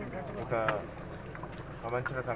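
A man's voice speaking in short phrases, one about half a second in and another starting near the end, with a pause between. A steady low hum runs underneath.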